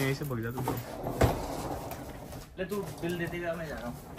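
A man's voice making short wordless vocal sounds, with a sharp click about a second in and a hiss after it.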